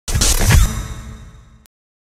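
Cinematic logo sound effect: a sudden whooshing hit that rings and fades over about a second and a half, then cuts off abruptly into silence.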